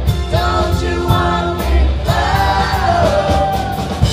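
Live rock band playing: sung vocal lines over electric guitar, bass and drums, the voice holding two long phrases, the second sliding down in pitch near its end.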